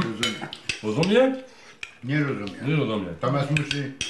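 Cutlery and dishes clinking at a meal table, with several sharp clicks of metal on china, over voices.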